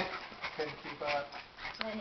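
A dog making several short vocal sounds.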